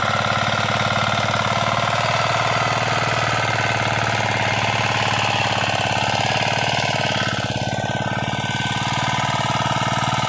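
Power tiller's single-cylinder engine running steadily under load as its rotary tines till the soil, a fast, even knocking beat. It eases slightly about seven seconds in, then picks up again.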